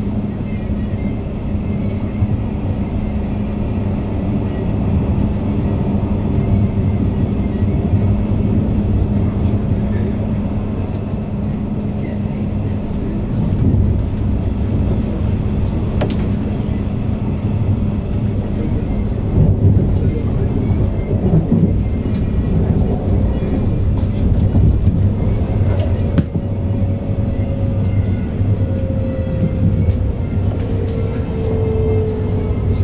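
Berlin S-Bahn class 484 electric train running at speed, heard from inside the passenger car: a steady rumble of wheels on rails with a steady low hum from the drive. Near the end a higher whine slowly falls in pitch.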